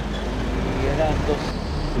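Steady low rumble of a stationary vehicle's engine running, under quiet speech.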